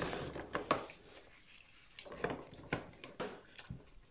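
Scattered small clicks and taps with faint wet rubbing as a laptop trackpad board is handled and scrubbed with a sponge in acetone, the softened glue coming away.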